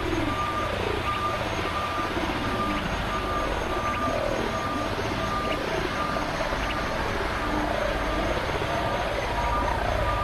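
Experimental electronic noise music from synthesizers: a short beeping tone repeats about every 0.7 seconds over a dense, noisy drone with a low rumble, while falling pitch sweeps recur every second or so.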